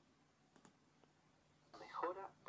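Near silence with a couple of faint computer mouse clicks. Near the end, faint speech starts as a YouTube video begins playing.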